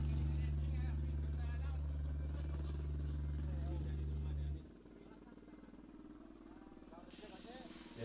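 The last low bass note of a live dangdut band is left held through the PA and cuts off abruptly about four and a half seconds in. Faint voices chatter underneath, and a burst of hiss comes in near the end.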